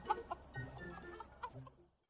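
A faint string of short, pitched bird-like calls, fading out towards the end.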